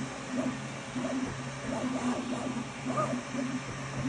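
Anycubic Kobra 3 Max 3D printer running: its stepper motors hum in short, repeated moves, a tone that comes and goes about twice a second, over the steady hum and hiss of its cooling fans.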